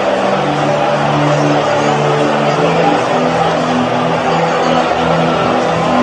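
A congregation praying aloud together, an even wash of many voices, over sustained keyboard chords that shift to new notes every second or so.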